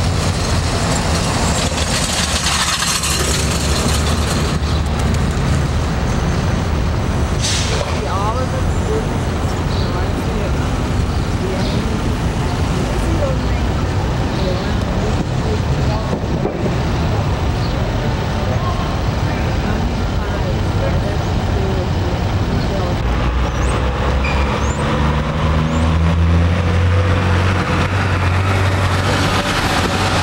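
Steady engine and traffic noise, with a truck's engine growing louder near the end as a semi-trailer passes close by.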